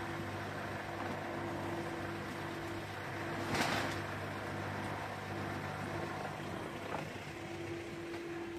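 A steady mechanical hum, a low drone with a higher steady tone over it, broken about three and a half seconds in by a brief rustle and by a small click near the end.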